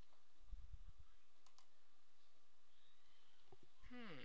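A few computer mouse clicks, some spaced out and a couple close together near the end, with a low thump about half a second in.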